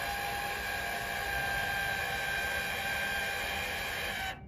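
Electric cutting-deck height actuator on a remote-control tracked lawn mower, running steadily with a thin whine of constant pitch over a hiss as the deck is lowered by remote.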